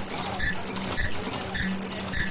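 Automatic fish-type KF94 mask making machine running: a steady mechanical clatter that repeats about twice a second over a low hum.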